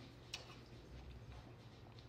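Near silence while watermelon is chewed with the mouth closed, with one short wet mouth click about a third of a second in over a faint steady low hum.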